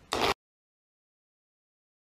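A brief loud burst of noise in the first moment, then the sound cuts off abruptly to complete silence.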